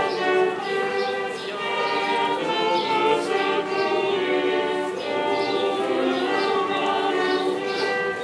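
A small mixed choir of men and women singing a medieval piece together, several voices in parts.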